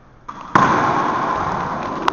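About half a second in, loud rustling and rubbing starts on the camera's microphone as the camera is picked up and handled. It stays loud and slowly fades.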